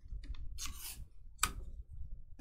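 Stiff, glossy chrome trading cards being thumbed through by hand, sliding and snapping against each other: a few light clicks, a brief sliding rustle just after half a second in, and a sharp snap at about a second and a half.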